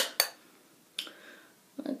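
Two short, light clicks about a second apart as a plastic makeup palette and fan brush are handled.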